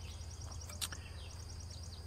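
Faint outdoor ambience: insects chirping in a fast, high, even rhythm over a steady low rumble of road traffic, with a single sharp click a little under a second in.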